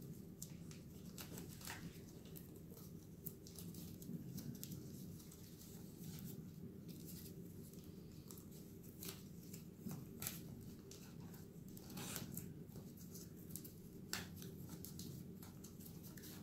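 Faint tearing, rustling and sticking of tape being pulled off and pressed onto the wooden roof pieces, with scattered small clicks and taps from handling the wood, over a low steady hum.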